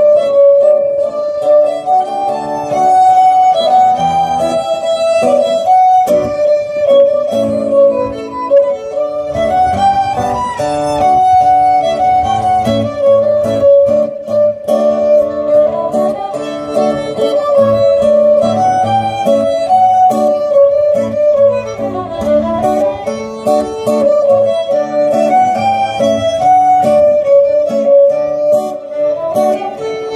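Folk ensemble playing a lively tune: violins carry a continuous melody over a strummed acoustic guitar accompaniment, amplified through PA speakers.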